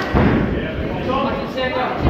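Shouting voices from the corners and crowd, with a heavy thud shortly after the start, typical of a kick or punch landing in a kickboxing exchange.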